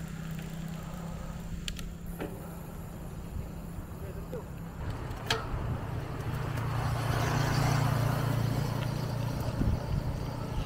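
Wind and road noise while riding a bicycle, under a steady low hum, with a motor vehicle passing close by. The vehicle is loudest about seven to eight seconds in, then fades a little.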